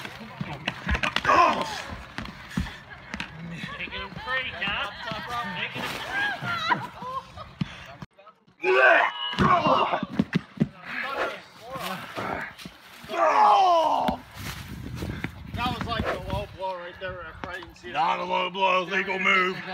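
Wrestlers' bodies thudding and slapping on a backyard ring mat amid excited shouting voices, with a brief drop-out about eight seconds in.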